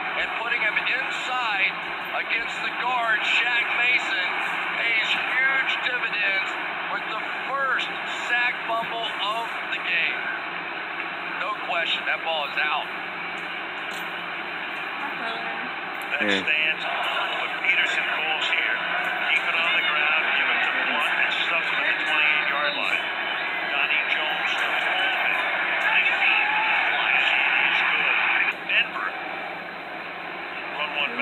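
Television broadcast of an American football game, played through a TV speaker: play-by-play commentators talk over steady stadium crowd noise, and the sound is thin, with no highs.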